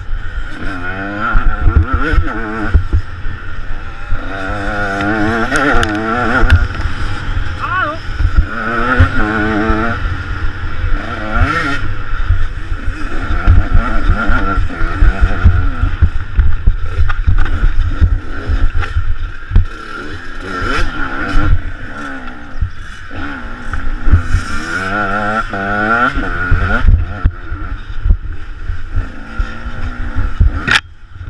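Onboard sound of a KTM 125 EXC two-stroke enduro motorcycle being ridden hard, the engine revving up and down again and again through throttle and gear changes. Wind and bumps thump low on the helmet-mounted camera's microphone throughout.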